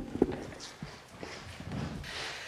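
Knocks and clunks of handheld microphones being set down on a small table, the two loudest in the first quarter-second, followed by quieter shuffling and footsteps.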